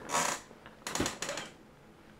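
A man's breathy, near-silent laughter: two wheezing bursts of breath, one at the start and one about a second in.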